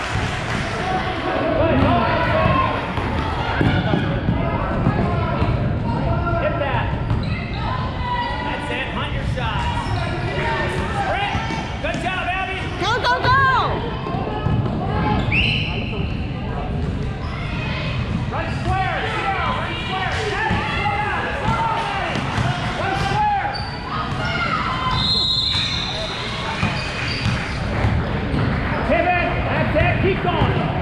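Basketball dribbled and bouncing on a gym's hardwood court during play, with players and onlookers calling out over it in a large hall.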